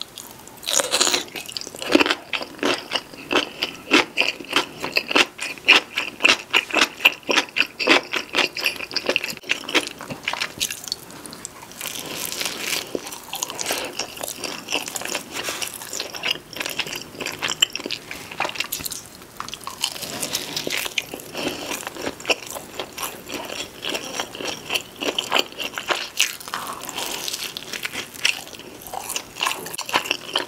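Close-miked eating sounds. For about the first ten seconds a pickled gherkin is bitten and chewed with rapid crisp crunches. After that comes softer, wetter chewing of pepperoni cheese pizza.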